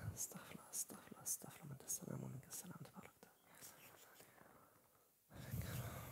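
A man whispering a prayer under his breath, soft murmuring with sharp hissed s sounds. It fades away, and about five seconds in a lower, louder murmur begins.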